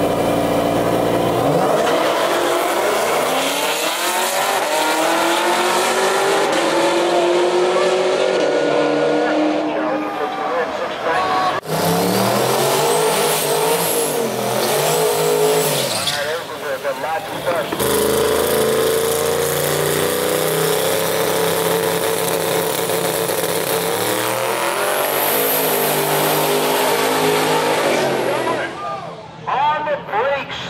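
Several cars' engines revving hard at the drag strip, each held at high revs with the pitch sliding up and down. The sound changes abruptly about 12 and 18 seconds in as one car gives way to the next.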